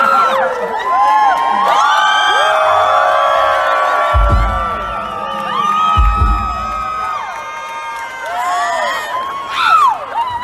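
A crowd cheering and whooping, with many voices overlapping in rising and falling 'woo' calls, some held for a few seconds. Two short deep rumbles come about four and six seconds in.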